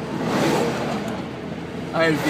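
Engine and road noise of a moving car, heard from inside the cabin, swelling a little about half a second in.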